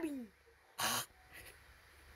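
A person's voice making a vocal noise: a falling voiced sound trails off, then a short breathy huff about a second in.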